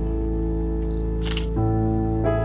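Background music with sustained keyboard chords that change near the end, and a single camera shutter click just past the middle.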